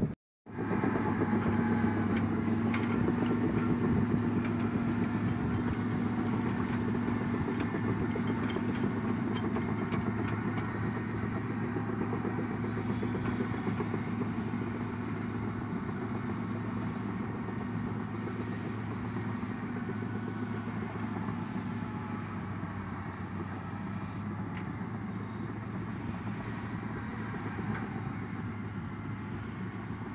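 Caterpillar D7R crawler bulldozer's diesel engine running steadily under load as it pushes dirt, with a steady whine that stops about two-thirds of the way through. The sound grows gradually quieter as the dozer moves away.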